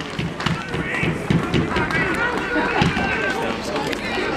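Men's voices shouting and calling across a football pitch, several overlapping at once, with a few sharp knocks among them.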